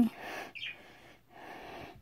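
Soft breathing, with one brief, high chirp about half a second in from the budgerigar held in the hand.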